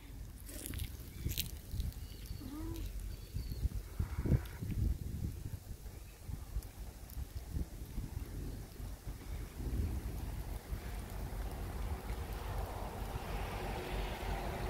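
Gusty storm wind buffeting the microphone in uneven low rumbles. A rushing hiss of wind through tree leaves builds near the end.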